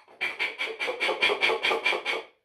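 A man laughing in a rapid, even run of short pulses, about seven a second, lasting nearly two seconds.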